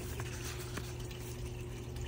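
Steady low background noise, an even hiss with a faint steady hum underneath, and one or two very faint ticks.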